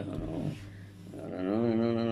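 A man singing one long held note that starts about halfway through after a quieter moment, with a low steady hum underneath.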